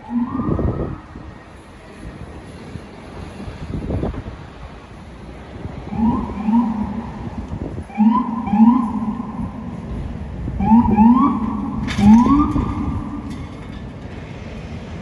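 Police car siren on an NYPD Police Interceptor Utility, sounded in short blasts that each rise quickly in pitch and then hold. One blast comes at the start, then they come in twos and threes every couple of seconds from about six seconds in, the sign of a car clearing traffic on an emergency response. City traffic noise runs underneath.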